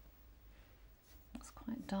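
Quiet room tone with a faint low hum, then a woman begins speaking softly near the end.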